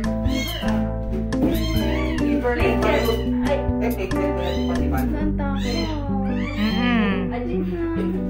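A two-week-old Shih Tzu puppy crying in repeated short, high whines that rise and fall, as liquid dewormer is given by oral syringe, over steady background music.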